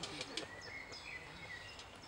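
Faint outdoor ambience with a few short bird chirps and a couple of brief sharp clicks near the start.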